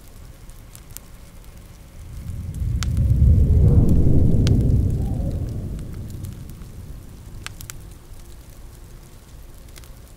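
A low rumble of thunder swelling and dying away over a few seconds, over the faint crackle of a wood fire.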